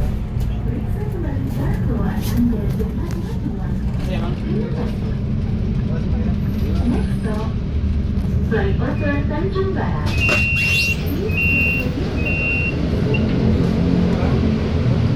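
Steady low drive and road rumble inside a city bus, with passengers talking. About ten seconds in comes a short hiss, then three short double beeps about a second apart: the door chime as the bus stops.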